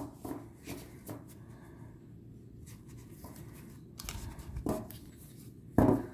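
A thick deck of matte card-stock oracle cards being handled by hand: soft flicks and slides of the cards in the first second, a quiet stretch, then rustling and a louder knock near the end as the deck is split for shuffling.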